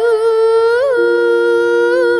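Female voice in Javanese kidung style holding one long sung note, with a quick ornamental turn a little before the middle. A steady lower held tone comes in underneath about halfway.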